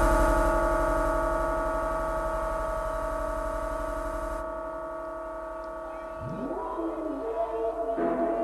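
Electronic music from a live set: a held synthesizer chord slowly fading, its deep bass cutting out about halfway through, then a synth tone sweeping upward in pitch near the end.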